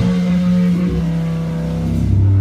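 Amplified electric guitars and bass letting held notes ring out at the end of a rock jam, without drums; a deep bass note swells near the end.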